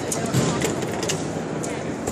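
Voices and crowd babble in a busy exhibition hall, with a few light, sharp metallic clicks from a hand tube cutter being turned around a copper pipe.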